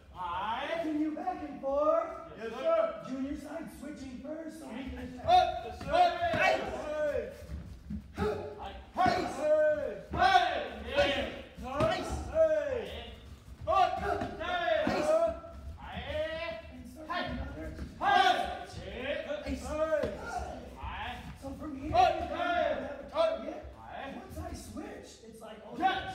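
Voices in a large, echoing hall throughout, mixed with occasional sharp thuds of kicks landing on sparring chest protectors.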